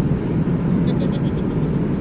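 Steady cabin noise of a Boeing 787 airliner in flight: an even low rumble of engines and airflow.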